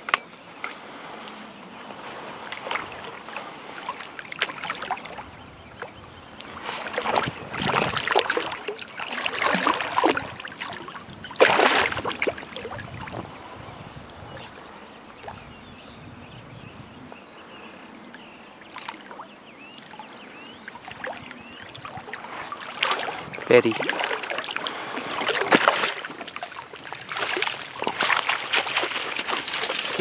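Water splashing and sloshing as a hooked trout thrashes in shallow water close to the bank. The splashing comes in two louder bouts, about a quarter of the way in and again near the end, with a quieter stretch between.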